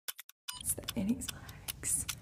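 Fast ticking sound effect, several sharp clicks a second. From about half a second in, a short stretch of a person's voice sounds over the ticking.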